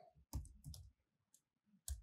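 A few faint, separate clicks of computer keyboard keys being pressed while typing.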